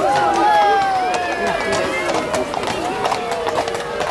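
Horses' hooves striking the path in irregular clicks as a horse-drawn carriage passes, under a crowd's voices calling out in long drawn-out calls and chatter.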